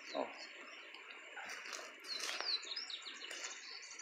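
Birds chirping faintly, a few short calls and quick falling whistled notes about halfway through, over a steady high-pitched background hiss.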